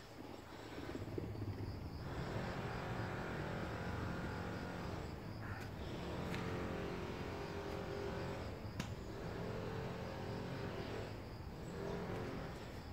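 A nearby engine hum that swells about two seconds in and eases off near the end, over a steady faint chirping of insects.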